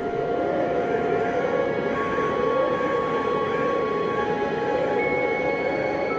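Wind sound effect howling, its pitch wavering up and down, under soft music with long held notes.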